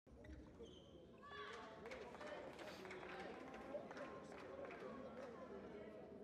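Faint, indistinct voices of several people talking at once, louder from about a second in, with a few small clicks and knocks.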